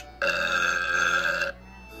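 A cartoon character's long voiced sound, held at one steady pitch for just over a second, played through a TV speaker and recorded off the screen.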